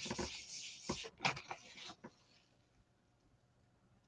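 Paper print being peeled off a tacky gel printing plate: a brief crackly rasp in the first second, then a few soft clicks and ticks, and then nothing for the last two seconds.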